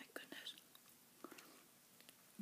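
Near silence with a few faint clicks and soft rustles from hands handling a burger, mostly in the first half second and once more a little past the middle.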